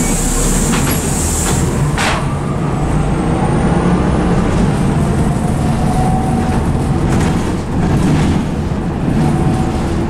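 Bus engine running, heard from inside the passenger cabin as the bus drives along. A high hiss in the first couple of seconds ends in a sharp click about two seconds in.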